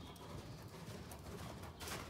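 Grey horse cantering on soft sand arena footing: faint, muffled hoofbeats. The horse is cross-firing (a disunited canter). A louder burst of noise comes near the end.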